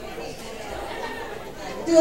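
Indistinct chatter of several people talking at once in a hall. Near the end, a woman's voice begins over a microphone, clearer and louder.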